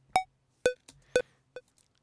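LUNA's built-in metronome clicking about twice a second, three clicks in all, the first higher in pitch than the other two.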